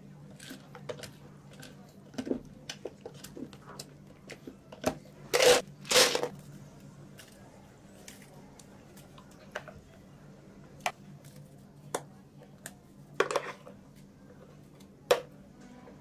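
Light clicks and knocks of utensils against plastic cups, with two loud clattering bursts of ice cubes going into a plastic cup about five and six seconds in. A faint steady low hum runs underneath.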